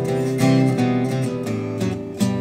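12-string acoustic guitar played in Carter-picking style: a melody picked on the bass strings, with chord strums on the treble strings between the notes.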